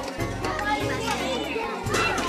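Children's voices shouting and chattering at play, over background music with a steady bass line.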